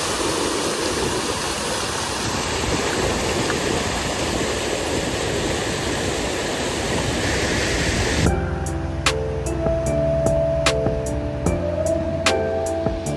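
Rushing water of a mountain stream cascading over boulders: a steady rush that cuts off about eight seconds in, giving way to music with a regular beat.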